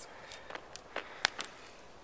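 A few faint, scattered clicks and light knocks over a low hiss, the sharpest one a little past the middle.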